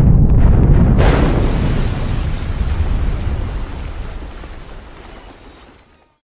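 A loud, deep rumble, then about a second in a sudden explosion-like burst of noise that dies away slowly to silence.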